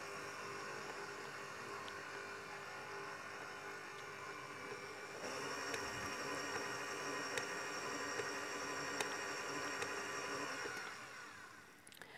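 Electric stand mixer running, kneading yeasted doughnut dough in its steel bowl: a steady motor whir that gets louder with a high whine added about five seconds in, then winds down and stops near the end as it is switched off.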